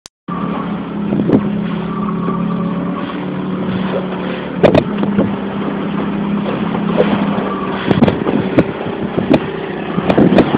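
An engine running steadily with a constant low hum, with scattered knocks and clicks over it, the loudest a couple of sharp knocks near the middle.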